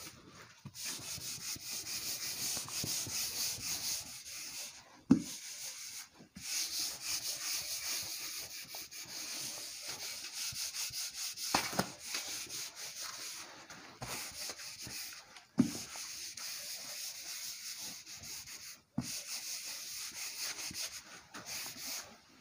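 Whiteboard duster wiping marker off a whiteboard: long rubbing strokes, hissy and high-pitched, broken by short pauses, with a few sharp knocks between strokes.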